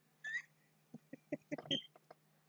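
A man's short high squeak, then a quick run of short breathy bursts: stifled laughter.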